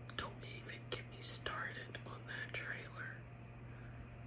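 A woman whispering, breathy unvoiced speech with hissy s-sounds and no words made out, trailing off about three seconds in; a steady low hum runs underneath.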